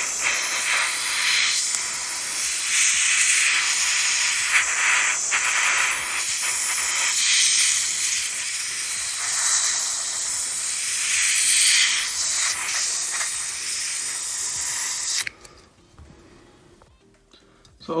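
Can of compressed air (air duster) spraying through a thin straw into a laptop's cooling fans to blow the dust out: a steady, loud hiss that wavers a little in strength and cuts off suddenly near the end.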